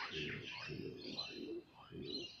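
Small birds chirping and twittering in quick high notes throughout, over a low murmuring human voice that fades near the end.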